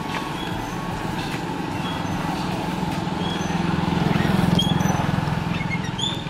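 A motor vehicle engine running on a road, a low steady hum that swells louder about four seconds in, as if passing close, then eases off near the end.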